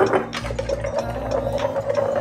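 A wooden spoon stirring coffee briskly in an aluminium pitcher, knocking against the metal in a rapid run of clicks.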